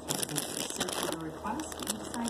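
Plastic snack wrapper crinkling as it is handled, a quick run of crackles throughout, with faint voice sounds in between.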